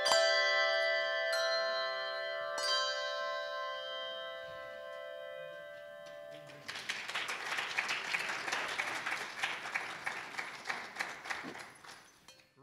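Church handbell choir striking its final chords, three struck chords about a second and a half apart that ring on and slowly fade. After about six and a half seconds, audience applause for about five seconds.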